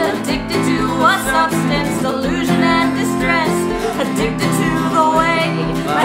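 Acoustic folk song played live: a woman singing while strumming an acoustic guitar, with a mandolin playing along.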